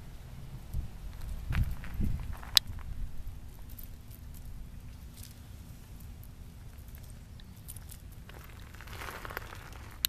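A toy poodle's paws stepping and scuffing on crushed shell gravel, a few faint scattered clicks and crunches. A few low thumps come between one and two seconds in, followed by one sharp click, and a soft rustle near the end.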